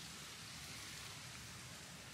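Faint, steady hiss of outdoor background ambience in a garden, with no distinct events.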